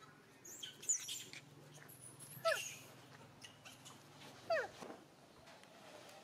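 Macaque calls: two short, loud squeals that fall steeply in pitch, about two seconds apart, with faint high chirps early on.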